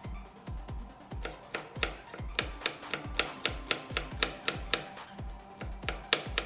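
Background electronic music with a steady kick-drum beat. From about a second in, quick sharp taps of a small knife on a wooden cutting board, about three to four a second, as garlic is minced.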